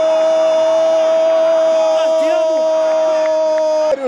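A Brazilian TV football commentator's long drawn-out goal cry, "Gooool!", held on one steady pitch and cutting off just before the end.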